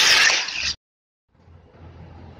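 Angle grinder's abrasive disc grinding the end of a 50×50 mm steel angle bar to a point. It makes a loud, harsh grinding sound that cuts off abruptly under a second in. After a brief silence, a much quieter steady background with a low hum follows.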